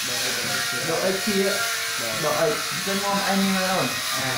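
A man's voice talking in Khmer, explaining a maths exercise, over a steady background hiss.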